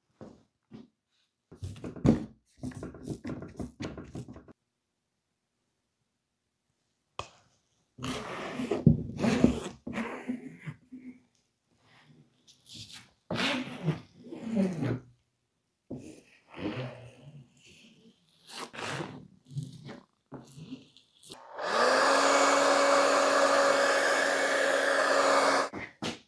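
A plastic spreader scraping and rasping in short strokes as resin is worked over carbon fiber fabric on a glass plate. Near the end a heat gun switches on and runs steadily with a whooshing blower and a steady motor hum, then cuts off.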